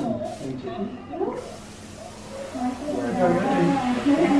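Dental air-water syringe blowing air, the 'tooth dryer': a short puff near the start, then a steady hiss of air from about a second and a half in.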